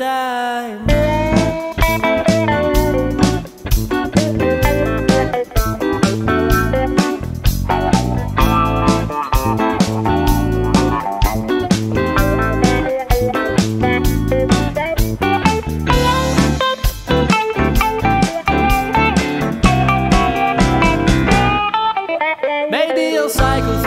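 Instrumental break in a blues-rock song: a lead guitar plays a melodic solo over bass and a steady drum beat, with no singing. The full band comes in about a second in.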